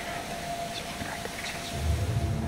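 Quiet woodland background hiss with a faint steady tone and a few brief, faint high chirps. A low, dark music bed comes in near the end.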